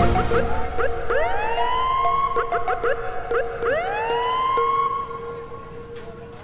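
Police siren wailing twice, each wail sweeping up in pitch and then holding, the first about a second in and the second halfway through, with background music underneath; it fades near the end.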